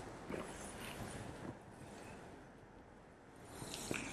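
Faint rustling and light handling noises in the first second or so, then near quiet.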